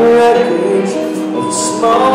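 Live country band playing a slow ballad, recorded from the audience seats of an arena.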